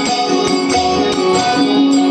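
Live bhajan music: a harmonium holding sustained notes over rhythmic tabla strokes.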